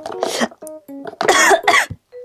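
A woman coughing after licking spicy Shin Ramyun seasoning powder: a short cough just after the start, then a louder, longer bout of coughing in the second half.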